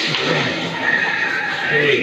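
Men's voices talking over the carrom game, with a pitched, whinny-like voice sound among them.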